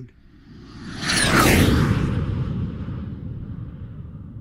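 Whoosh sound effect for a title card. It swells up about a second in, with a falling sweep running through it, then fades out slowly into a long low tail.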